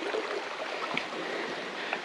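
Creek water running steadily.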